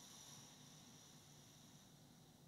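Near silence: room tone with a faint high hiss that fades away toward the end.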